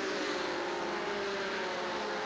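NASCAR Busch Grand National stock cars racing at full throttle, their V6 engines giving a steady drone whose pitch slowly falls.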